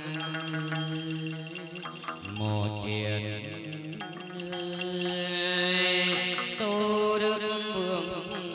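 Chầu văn ritual music: a male singer chanting long held notes that step from pitch to pitch, accompanied by a plucked đàn nguyệt moon lute and a bamboo flute.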